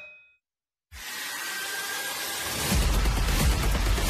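After a brief silence, a hissing noise swells in, and a heavy low rumble joins it about two and a half seconds later.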